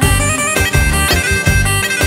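Instrumental break in Albanian folk dance music: a reedy, sustained wind-instrument melody over a steady drum beat, with no singing.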